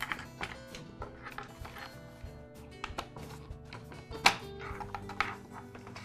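Soft background music, with a few light clicks and taps from a throttle cable being fed through a plastic blower housing; the sharpest tap comes about four seconds in.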